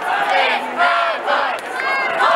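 Football spectators shouting and cheering during a play, several voices yelling over each other.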